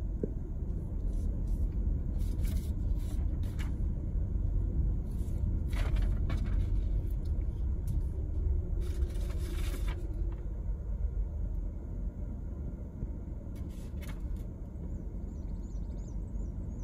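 Steady low rumble of a car's engine and tyres heard from inside the cabin as the car drives slowly along a paved road. A few brief higher-pitched noises come through, the most noticeable about six and nine seconds in.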